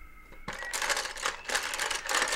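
Coloured pencils and crayons rattling and clattering in a box as a hand rummages through them. The clatter comes in two bursts of about a second each, starting about half a second in.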